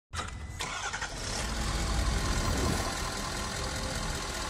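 A vehicle engine running, a steady rumble that grows louder towards the middle and eases off slightly.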